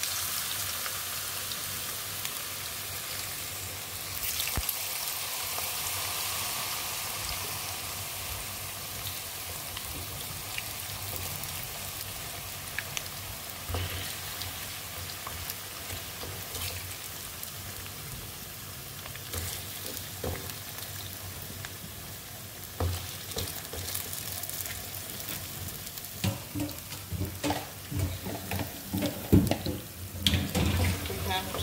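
Potato chips sizzling as they fry in hot oil in a pan, a steady hiss that eases slightly as it goes on. A plastic slotted spatula stirring them adds scattered clicks and scrapes against the pan, more often near the end.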